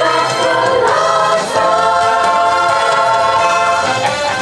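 A girls' choir singing held chords in several-part harmony, with a short break between phrases about a second in.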